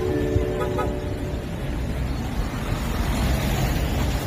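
Car horns sounding in long steady tones at several pitches at once, stopping about a second and a half in, over a steady low rumble of road traffic.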